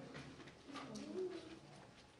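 A faint, brief low murmured voice, like a soft 'mm', in a quiet pause.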